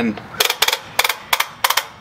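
Werner ladder leveler's leg ratcheting out in quarter-inch increments: a quick run of about six sharp metallic clicks over a second and a half.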